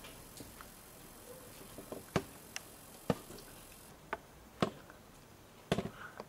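Scattered short clicks and knocks at irregular gaps of about half a second to a second, over faint room hiss, with no musical notes sounding.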